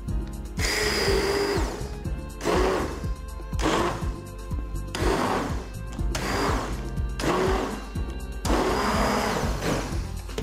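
Hand-held immersion blender whirring in about six short bursts of a second or so, with brief pauses between, as it purées cooked dried peas and vegetables into a cream in a steel saucepan.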